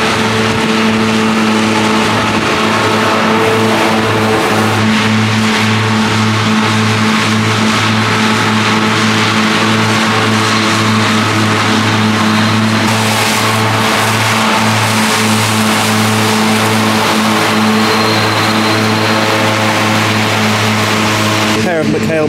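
Case IH tractor working at steady revs, driving McHale front and rear mower-conditioners through standing grass: a continuous machine hum made of several steady tones that hold constant in pitch.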